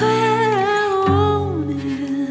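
A woman's voice sings one long held note with vibrato into a microphone, sliding down to a lower note about three-quarters of the way through, over a live band's accompaniment.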